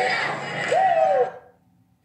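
Closing seconds of a pop music video's soundtrack: a crowd shouting over music, with one long vocal call falling in pitch, then the sound cuts off suddenly about 1.3 seconds in, leaving near silence.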